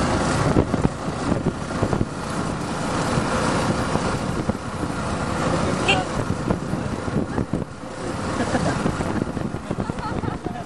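Motorcycle riding along a road: steady engine running mixed with wind and road noise, with a brief high chirp about six seconds in.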